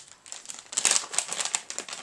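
Plastic bait bag crinkling as it is handled, a dense run of crinkles starting a little under a second in.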